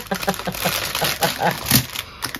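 Clear plastic packaging bags crinkling and rustling as they are handled, in quick irregular crackles.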